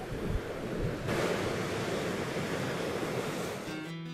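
Ocean surf breaking and washing up a sandy beach, a steady rushing sound that grows louder about a second in.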